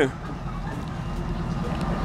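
Regional passenger train at the platform: a steady low rumble, growing slowly a little louder.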